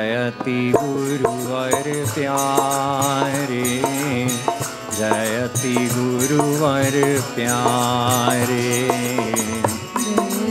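Devotional kirtan: a man's solo voice singing a slow, ornamented chant over sustained harmonium chords, with percussion keeping a steady beat.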